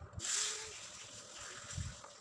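Cardboard firecracker box sliding against the boxes packed around it as it is pulled out: a sudden rustling scrape that fades over about a second and a half, with a soft knock near the end.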